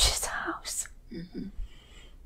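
A woman speaking in a strained whisper, finishing a short sentence, then two faint short murmurs about a second later.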